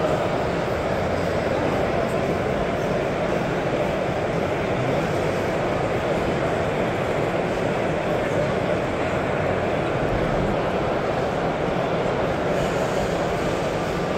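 Steady crowd noise in a large hall: many overlapping, indistinct voices blending into one continuous background sound.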